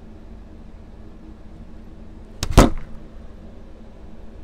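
Low steady room hum, broken about two and a half seconds in by one brief, very loud handling noise on the phone's microphone as the phone is moved.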